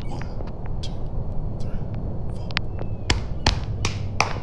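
Hand claps and thigh slaps beating out a rhythm: a few soft hits early on, then three sharp ones a little under half a second apart near the end, over a steady low hum.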